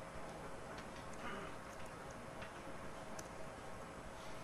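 Faint, irregular clicks of keys being typed on a computer keyboard, over a steady faint hum.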